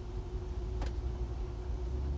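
Low, steady rumble inside a moving car's cabin, with a steady hum over it and one brief click about a second in.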